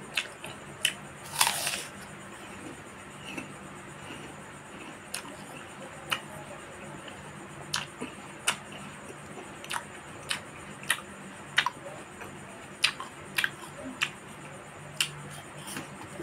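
Close-miked eating sounds: irregular sharp mouth clicks and smacks from chewing fruit, about one or two a second, with a longer crunchy burst about a second and a half in. A faint steady hum runs underneath.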